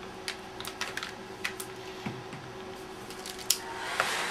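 Small clicks and crinkles of hands pressing a strip of double-sided tape onto a plastic shrink sleeve around a drink can, with a sharper click about three and a half seconds in.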